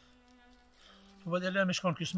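A faint, steady low buzzing drone, then a man's voice starting over it just past halfway.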